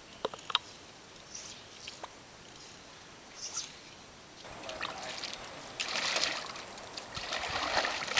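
Water splashing and trickling in several noisy bursts through the second half, with a couple of sharp clicks near the start.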